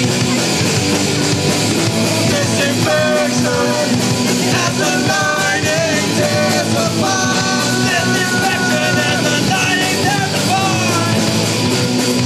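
Live punk rock band playing: electric guitars, bass guitar and drum kit at a steady level, with a voice singing over the band from about three seconds in.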